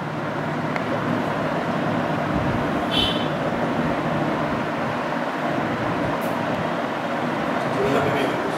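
Steady rushing background noise, like road traffic, with a brief short high tone about three seconds in.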